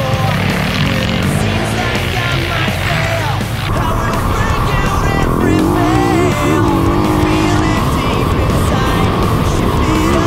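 Music with a singing voice laid over a Yamaha dirt bike's engine revving on a dirt track.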